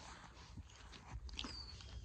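Faint rustling and soft clicks of horses' muzzles and lips nosing and nibbling close to the camera, over a low rumble, with one brief faint squeak about a second and a half in.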